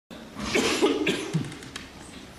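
An elderly man coughing, a short rough run of coughs lasting about a second.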